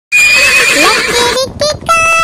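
A horse whinnying for just over a second, with a quivering pitch. Near the end a voice begins singing in short notes.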